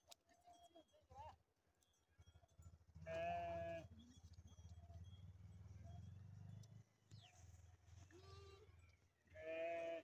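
A flock of sheep bleating: two loud, drawn-out bleats, about three seconds in and again near the end, with fainter short bleats between them and a low rumble underneath in the middle seconds.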